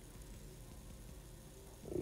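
Faint steady low hum of room tone, with no distinct sound.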